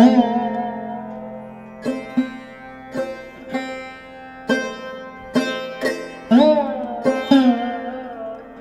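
Background music on a plucked string instrument: single notes struck at uneven intervals and left to ring, some of them bending in pitch.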